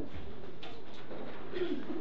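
Indistinct low murmur of voices in a small hall, with no clear words.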